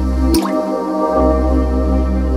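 Electronic outro music: a sustained synth chord over a steady bass. About a third of a second in there is a short rising bloop, and the bass drops out for under a second before returning.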